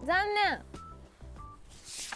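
A woman's voice says one short word, then low background with a couple of brief, faint beeps. Near the end a hissing whoosh begins as a page-turn transition effect starts.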